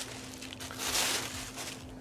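Thin plastic bag crinkling and rustling as it is handled and a spotting scope is slid out of it, loudest about a second in.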